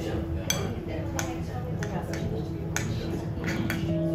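Metal spoon stirring and scraping in a ceramic bowl of chopped fish, with several light clinks of spoon against bowl.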